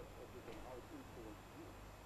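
Near silence with faint, short voice-like fragments in the background.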